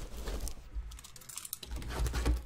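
Shrink-wrapped cardboard trading-card blaster boxes being handled and set down in a row on a table: a quick run of light clicks and taps.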